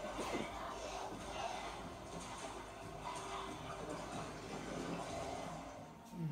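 Television soundtrack of a drama episode, mostly background score music, heard from the TV's speakers across a room.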